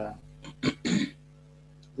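A man clearing his throat with a few short, rasping bursts between about half a second and one second in. A steady low electrical hum runs underneath.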